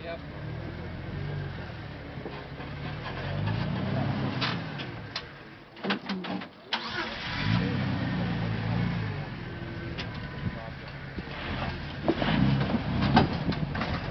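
Off-road vehicle engine revving up and down in repeated bursts under load, with a few sharp knocks around the middle where the engine briefly drops away.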